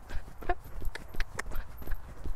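A pony's hooves trotting on a wet, muddy sand arena: an even run of dull hoofbeats, about three a second.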